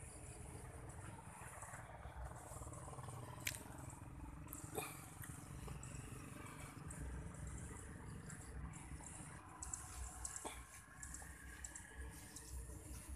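Faint outdoor ambience: a low, uneven rumble with a steady high hiss above it and a few sharp clicks.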